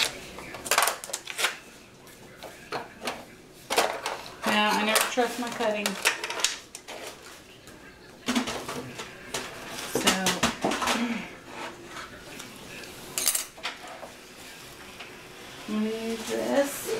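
Craft tools and paper being handled on a tabletop: scattered knocks and clatter of hard objects set down, with rustling in between.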